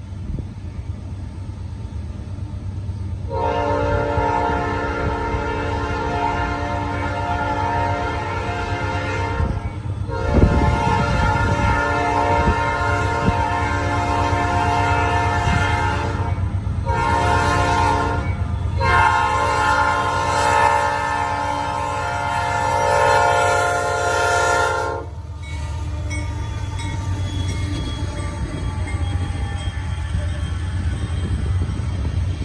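Norfolk Southern freight locomotive's multi-note air horn sounding the grade-crossing signal in four blasts: long, long, short, long. Under it the train rumbles steadily, and the rumble of the passing tank train carries on after the horn stops near the end.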